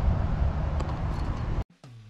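Steady low outdoor rumble that cuts off abruptly about one and a half seconds in; a guitar music track begins faintly near the end.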